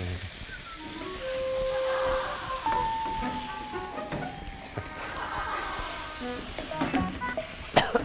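Background music added in the edit: a short held note, then a longer note that slides slowly down in pitch, over faint frying sizzle from the pan.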